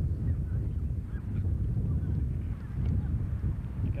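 Wind buffeting an outdoor microphone: a steady low rumble, with a few faint short higher sounds over it.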